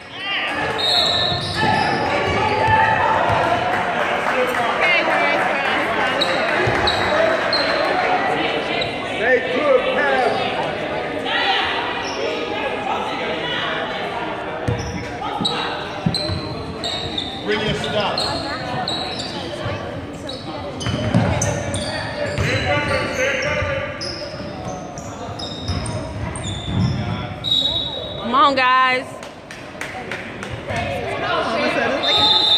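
Basketball game sounds echoing in a school gym: a ball dribbling on the hardwood floor, sneakers squeaking and spectators talking. A referee's whistle blows near the end.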